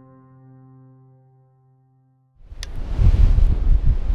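Sustained piano chords fade out, and after about a second of near silence there is a sudden cut to strong wind buffeting the microphone, a loud low rumbling roar with a sharp click just after it starts.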